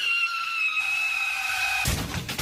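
Car tyres screeching in a skid, a steady high-pitched squeal that falls slightly in pitch, broken off near the end by a sudden loud crash-like burst of noise.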